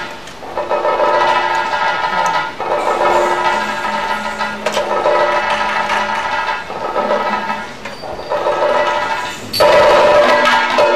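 Live accompaniment for a Mohiniyattam dance: long held melodic notes with a few sharp percussion strokes, the loudest near the end.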